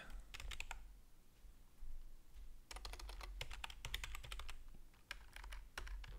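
Typing on a computer keyboard: quiet clusters of quick keystrokes with short pauses between them.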